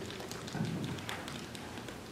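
Faint scattered taps and clicks of room noise, with a soft low thud about half a second in.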